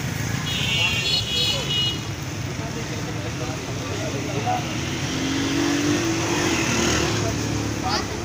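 Street traffic: vehicle engines running steadily close by, with voices in the background. A high tone sounds for about a second and a half near the start.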